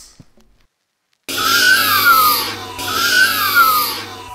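Monster screech sound effect: two loud, harsh shrieks in a row, each rising then falling in pitch, starting suddenly after a short silence over a low steady hum.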